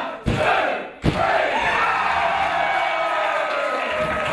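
Two sharp slaps on the wrestling ring mat about a second apart, the close of a referee's pin count, then the crowd's long collective shout.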